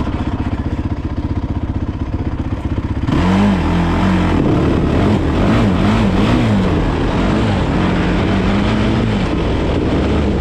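Honda 450 ATV engine running under way: a steady low rumble for about three seconds, then louder, its pitch rising and falling repeatedly as the throttle is worked.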